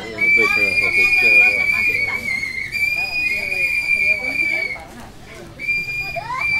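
A steady, high whistle-like tone sounds over a jumble of voices in an experimental electroacoustic noise piece. The tone breaks briefly about halfway through, stops about a second before the end, and comes back right at the end.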